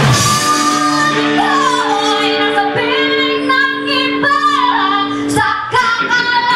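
Live rock band breaking down: the drums and full band cut off at the start, leaving a singer's voice over a held chord. The full band comes back in near the end.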